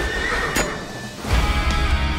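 Trailer music, with a horse whinnying and a sharp hit right at the start. The music dips, then swells back up about a second and a half in.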